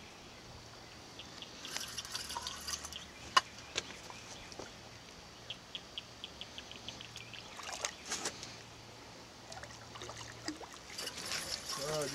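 Light water splashing and trickling at a boat's side as a snagged spoonbill (paddlefish) is drawn up, splashing at the surface near the end. Scattered small clicks and knocks run through it, with a quick run of ticks about halfway through, over a faint steady low hum.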